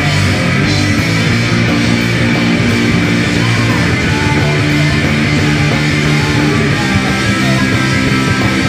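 Rock band playing live and loud: electric guitar, electric bass and drum kit going steadily, with no break.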